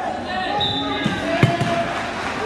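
Indistinct chatter of voices echoing in a gymnasium, with a single sharp thump about one and a half seconds in.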